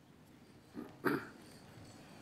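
A short throat-clearing sound about a second in, with a smaller one just before it, over faint hall noise.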